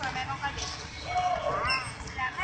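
Several people talking at once, among them high-pitched children's voices, with low bumping and handling noise close to the microphone.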